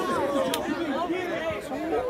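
Several young men's voices talking and shouting over one another in a lively group, with one sharp crack about a quarter of the way in.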